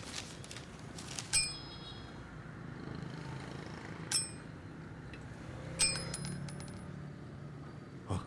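Three short metallic dings, each a sharp strike with a brief bell-like ring, about a second and a half in, about four seconds in and near six seconds in, the last a quick run of several strikes, over a faint low hum.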